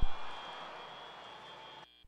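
Arena crowd noise as the match ends: a sharp thump at the start, then a hubbub that slowly dies away and cuts off suddenly near the end.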